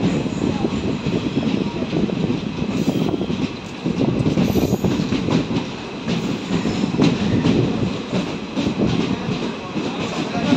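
Express train coach running along a station platform, heard from its open doorway: a steady rattle and clatter of the coach and its wheels on the rails.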